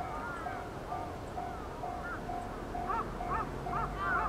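Level crossing warning alarm ringing, a single tone repeating about twice a second, while birds call over it, more often and louder near the end. A low diesel locomotive engine drone comes in about three seconds in as the train nears.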